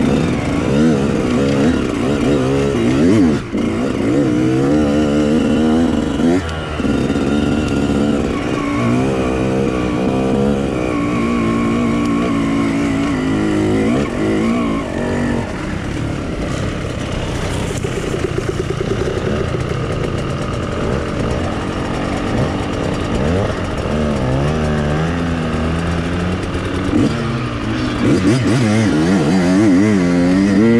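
Dirt bike engines revving up and down on a rough off-road climb, the pitch rising and falling constantly with the throttle. They run more evenly through the middle and rev hard again near the end.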